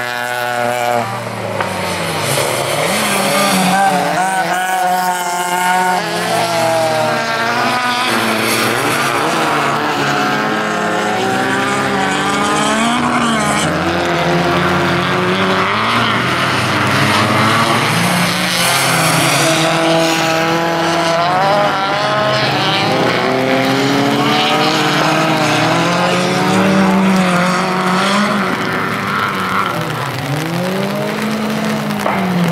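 Several bilcross race cars' engines running hard at once. Their pitch repeatedly rises and falls as they rev up through the gears and lift off for corners, over one another, without a break.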